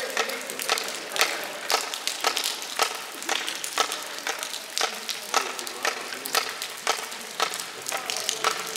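Footsteps crunching on a loose stony path, about two steps a second, over a steady patter of rain.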